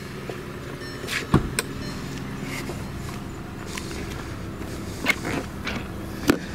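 A Volkswagen Eos's 2.0 TSI turbocharged four-cylinder idling steadily, with a few sharp clicks and knocks; the loudest comes about a second and a half in.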